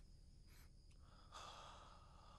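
Near silence, with faint breathy exhales, a short one about half a second in and a longer one about a second and a half in.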